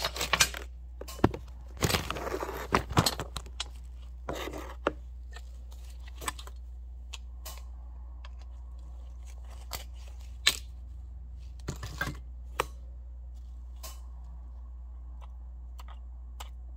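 Handling noise from pliers and scrap appliance parts on a workbench: a busy stretch of clicks, knocks and scraping rustle in the first few seconds, then scattered single clicks every second or two over a steady low hum.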